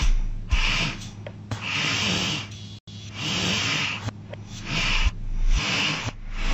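A person making heavy, rhythmic breathing noises, one breath about every second, over a faint steady low hum.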